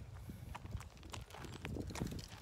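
Footsteps on dry leaf litter and bare ground: a run of light, irregular ticks.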